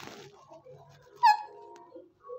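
Alexandrine parakeet giving one short, loud squawk about a second in, its pitch falling sharply before it trails off.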